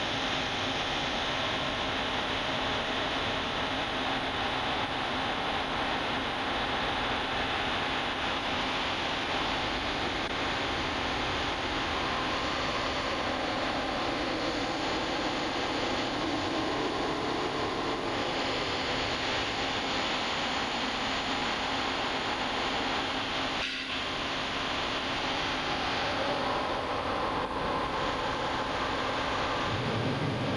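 Steady hiss of noise on the audio feed, with a faint low steady hum under it and a brief dip about 24 seconds in.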